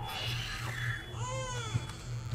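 Baby-like creature cooing from the show's soundtrack: Grogu making short rising-and-falling squeaky calls, the clearest about a second and a half in, over a low steady hum.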